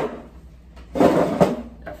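A wooden chair shifted and scraped briefly on the floor about a second in, ending with a light knock.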